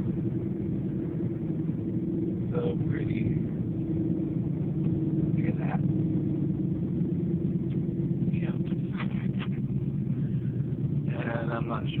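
Steady low road and engine rumble inside the cabin of a moving car, with a few brief snatches of a voice and talk starting near the end.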